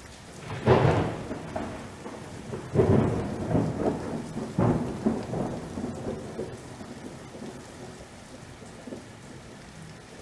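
Thunderstorm: steady rain with rolls of thunder, three loud rumbles in the first five seconds, then slowly dying away.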